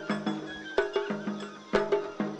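Japanese festival hayashi music from a float: sharp drum strokes in a repeating rhythm, a strong stroke about once a second, over a sustained flute-like melody.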